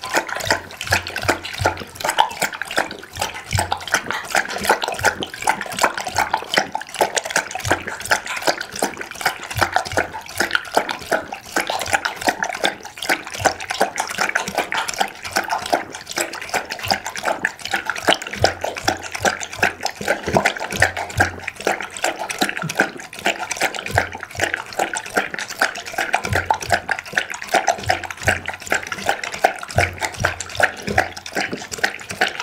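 Pit bull lapping liquid from a glass bowl close to the microphone: a steady run of rapid, wet tongue laps, several a second.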